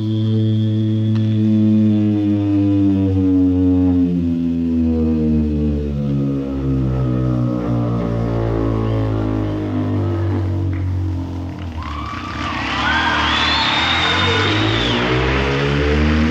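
Live concert music on an audience recording: a long held low chord whose tones drift slowly down. About twelve seconds in, brighter bending tones come in higher up.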